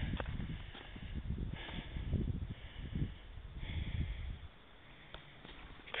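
A hiker's footsteps scuffing and stepping over sandstone, with irregular rumbling bumps on the hand-held camera's microphone; it goes quieter for the last second and a half.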